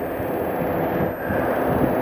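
Steady low engine rumble outdoors, with a faint steady hum coming in about halfway through.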